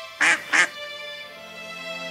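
Two quick, loud quacks from a cartoon duckling, about a quarter second apart, over background music.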